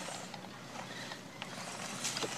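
Faint running of a small electric RC truggy driving over wood-chip mulch: a low, even motor-and-tyre noise with a couple of light clicks from chips and sticks.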